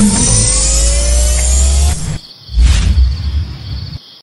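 Edited-in outro sound effect: a loud rushing whoosh with a slowly rising tone for about two seconds, a brief drop, then a second short burst, fading out on a faint high steady tone.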